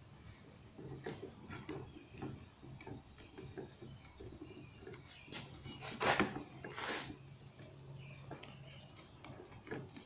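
Quiet rustling and light scraping of a brittle beeswax foundation sheet being eased through a wooden hive frame, with two louder swishing scrapes about six and seven seconds in. A faint steady hum sits underneath.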